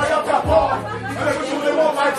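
A rapper's voice through a club microphone over a hip-hop backing track, with one deep bass note held for about a second in the middle.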